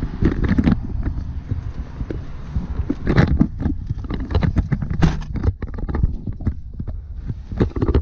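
Knocks, thumps and rustling as a person climbs into a pickup truck's cab, with a steady low rumble of mic handling underneath. Sharp knocks come about three seconds in, about five seconds in and near the end.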